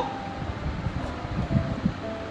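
A small zippered pouch being handled as its zipper is worked open, with soft rustles and bumps over a steady background hiss.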